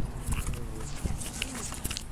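Flip-flops slapping on asphalt in irregular steps, over low wind and handling rumble on the camera microphone.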